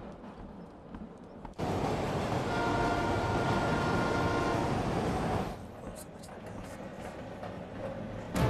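A train rushing past at speed: a loud rush that comes in suddenly about a second and a half in and drops away about four seconds later, with a steady horn chord sounding over the middle of it. Before and after it there is a lower, steadier rumble.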